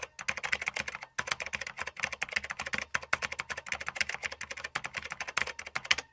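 Typing sound effect: rapid keystroke clicks, many a second, with a brief pause about a second in, then stopping at the end.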